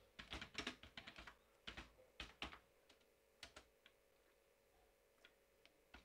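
Faint keystrokes on a computer keyboard: a quick run of taps over the first three and a half seconds or so, then only a few scattered ones.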